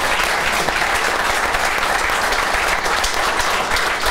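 Audience applauding steadily.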